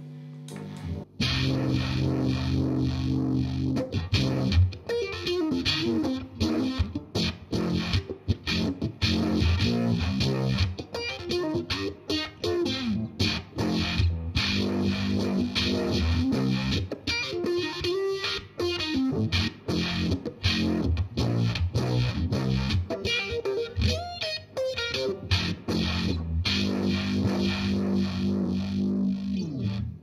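Electric guitar played through a Fuzz Face fuzz pedal into a Uni-Vibe-style vibe pedal: distorted riffs and chords with a swirling, wavering vibe modulation. The playing starts about a second in.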